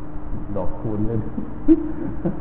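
A Buddhist monk's voice preaching in Thai, with one short, loud held vowel near the end, over a steady low hum.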